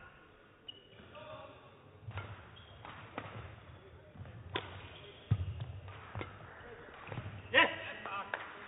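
Badminton rally: sharp racket strikes on the shuttlecock about once a second, mixed with players' footfalls on the court, and a heavier thud about five seconds in.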